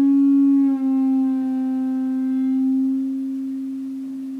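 A single note on an electric guitar freshly strung with new Elixir strings, ringing out and slowly fading, with a slight shift in pitch about a second in.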